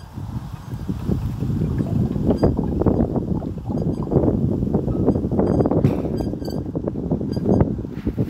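Wind buffeting the microphone: a loud, irregular low rumble that gusts throughout, with faint high ticks in the middle and later on.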